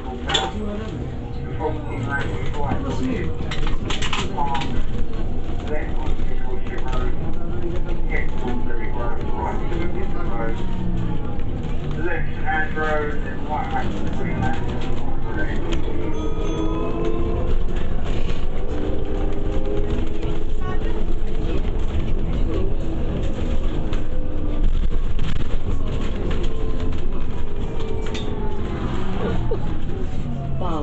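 A city bus in motion, heard from inside the passenger saloon: a steady engine and road rumble whose pitch rises and falls through the middle as the bus pulls and slows, with passengers talking.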